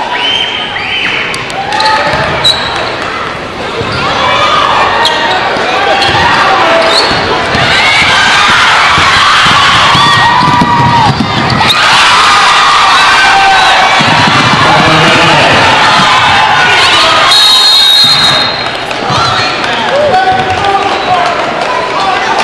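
Basketball game in a large gym: a ball bouncing on the hardwood among players' and spectators' shouts, with a referee's whistle blowing for about a second near the end to call a foul.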